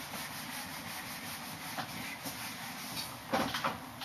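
Whiteboard eraser rubbing across the board in repeated wiping strokes, with a short louder knock near the end.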